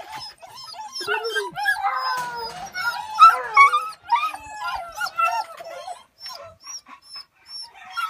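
Several beagles baying and yelping at once, a dense run of overlapping high-pitched calls that thins out over the last couple of seconds.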